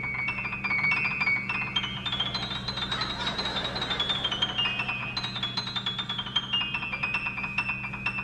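Piano played fast high on the keyboard: a rapid stream of repeated notes that climbs step by step to a peak about halfway through, then steps back down. A steady low hum sits underneath.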